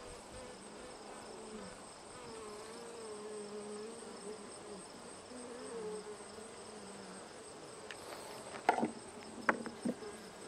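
Honeybees buzzing around an open hive frame, a steady, gently wavering hum. A few sharp clicks come near the end.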